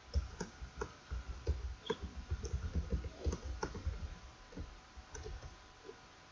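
Computer keyboard typing: a quick run of key clicks that thins out after about four seconds.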